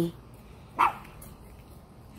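A single short dog bark a little under a second in, falling in pitch.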